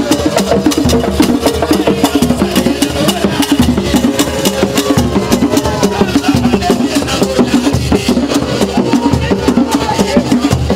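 Live hand drumming with a rapid, even clicking percussion beat and voices singing over it.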